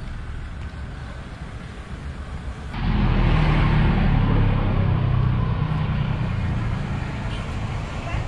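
Street traffic noise. About three seconds in the sound steps up suddenly to louder traffic with a low engine drone, which slowly eases off.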